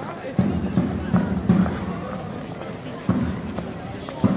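A large double-headed drum (davul) beaten in heavy, irregular thumps: a quick run of four strokes, a pause, then another stroke after about three seconds. Passers-by chatter underneath.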